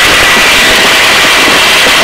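Helicopter in flight: loud, steady turbine and rotor noise with a steady high whine.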